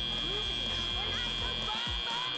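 Arena end-of-match buzzer: a steady high tone held over background music, signalling that match time has run out.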